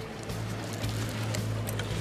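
Background music with a steady low drone, over the noise of a boat at sea.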